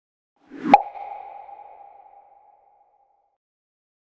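A single sound effect: a sharp pop with a brief swell leading into it, then a ringing tone that fades away over about two seconds.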